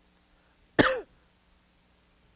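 A man clears his throat once, briefly, about a second in: a short voiced sound falling in pitch.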